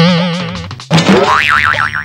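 Cartoon-style 'boing' sound effect: a sudden wobbling twang that dies away over about a second, followed by a second comic effect with a warbling tone that wavers rapidly up and down.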